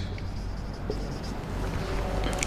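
Dry-erase marker rubbing across a whiteboard as a word is written, a faint scratching over steady room hiss and a low hum.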